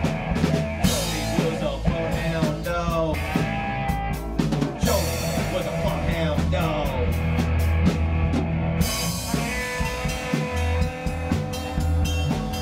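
Instrumental break of a swamp-rock band song: drum kit keeping a steady beat under guitar and bass.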